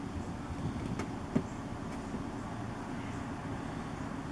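Steady low outdoor background rumble, with two brief knocks, the louder about a second and a half in.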